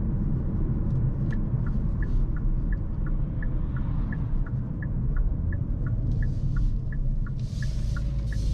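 Cabin sound of a 2022 Hyundai Kona N on the move: a steady low rumble from its 2.0-litre turbocharged four-cylinder and the road. From about a second in, the turn-signal indicator ticks about three times a second.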